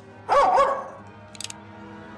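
A dog barks once, a single loud, short bark, with a few faint clicks about a second later.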